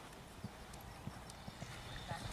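Faint, dull hoofbeats of a young horse cantering on a sand arena, a few thuds a second.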